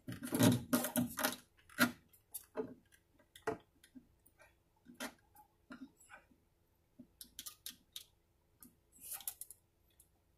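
Irregular clicks and short scratchy rubs of a wound nylon low E string being pulled tight and tied off at the bridge of a classical guitar, with the string end tapping and scraping against the bridge and top. The loudest scraping comes in the first second or so.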